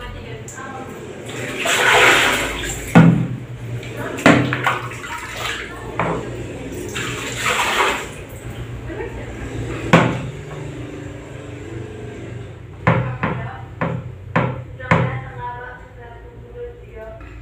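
Water splashing in two bursts about a second long each, with several sharp knocks in between and a quick run of them near the end.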